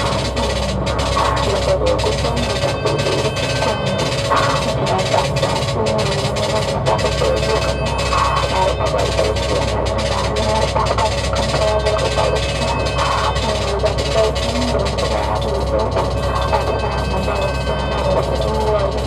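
Electronic music played live from a laptop and controller: a steady drum beat over deep bass, with the bass thinning out for a couple of seconds about five seconds in.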